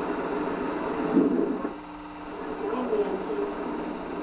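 Indistinct, muffled voices over a steady hum and noise, too unclear for any words to be made out.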